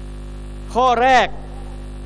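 Steady electrical mains hum, a low constant drone under the amplified audio. A man's voice says a short two-word phrase about a second in.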